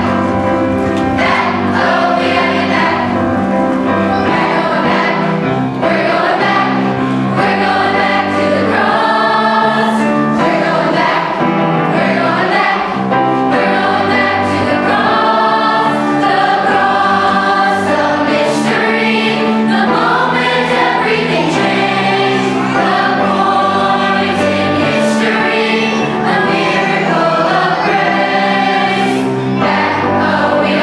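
A children's choir singing together with instrumental accompaniment.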